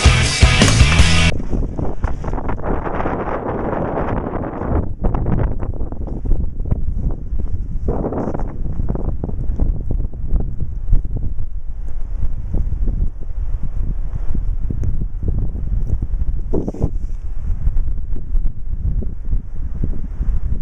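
Music cuts off about a second in, then strong blizzard wind buffets the microphone with a gusty rumble that rises and falls.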